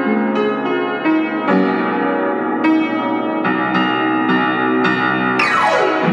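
Solo piano playing chords, struck again every half second or so, with a fast glissando sweeping down the keys near the end.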